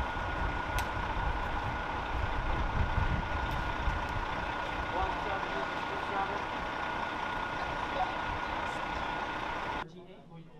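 Coach buses idling: a steady low engine rumble with a constant high whine over it, and people's voices faintly in the background. It cuts off suddenly near the end.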